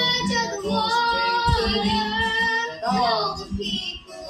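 A young girl singing a worship song, holding long notes, over a strummed acoustic guitar; her singing ends with a sliding note about three seconds in, leaving the guitar.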